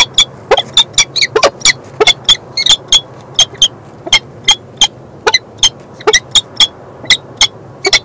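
A pair of peregrine falcons calling to each other with rapid, repeated short calls, about three to four a second, some rising in pitch. The calls are given face to face in the nest scrape, as is typical of the pair's courtship ledge display.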